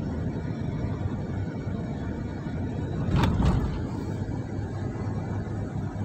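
Road noise heard inside a moving car: a steady low rumble of tyres and engine, with one brief louder swell about halfway through.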